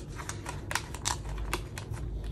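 A clear plastic cash envelope in a small ring binder being handled, giving irregular sharp crinkles and clicks of the plastic.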